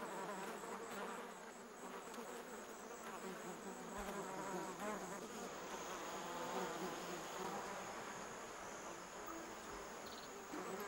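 Bees and flies buzzing in a steady drone, with a faint high tone pulsing about four times a second that fades out partway through.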